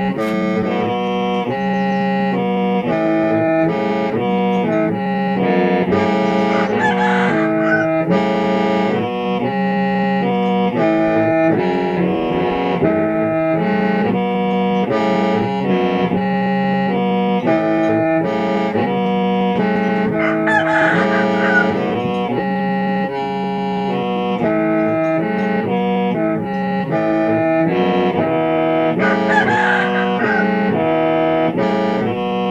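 Hmong qeej, a bamboo free-reed mouth organ, played solo in a 'kho siab' (lonely-heart) tune: several reed tones sound together over a steady low drone, with the melody changing notes about twice a second.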